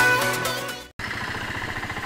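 Electronic dance music fades and cuts off about a second in, followed by a motorcycle engine running steadily with an even, rapid pulse as the bike is ridden.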